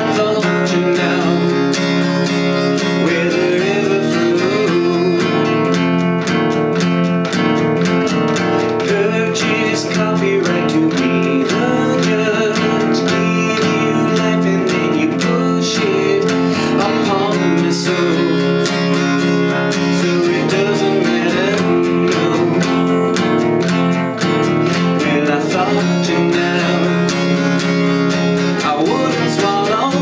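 Steel-string acoustic guitar with a capo, strummed in steady chords, with a man's voice singing over it at times.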